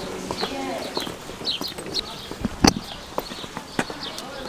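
Footsteps on a hard floor, with one heavier thump about two and a half seconds in, while small birds chirp repeatedly.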